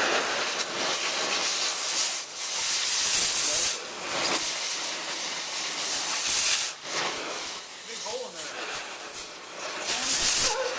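Oxy-acetylene cutting torch hissing steadily as its flame melts through a hard drive's metal casing, throwing sparks. The hiss drops away briefly twice, about four and seven seconds in.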